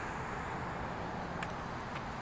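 Steady road traffic noise: the rush of car tyres and engines on the street, with a couple of faint clicks.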